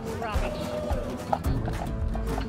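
Hooves of a harnessed horse clip-clopping on a paved road as it pulls a cart, in a steady beat of about three to four knocks a second. Music with a voice plays over it.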